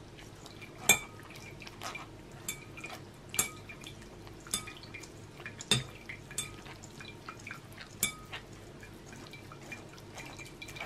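Spoon pressing boiled mandarin pulp through a metal mesh sieve into a glass bowl: wet scraping and dripping with irregular clicks as the sieve knocks against the glass. The loudest knocks come about every two seconds and ring briefly.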